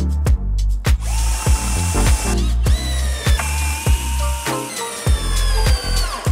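Cordless drill driving screws into a wooden frame, its motor whine starting about a second in and running in several spurts, each rising in pitch, over background music with a steady beat.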